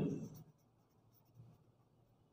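Pen writing on lined notebook paper, a faint scratching as a word is written, just after a man's voice trails off at the start.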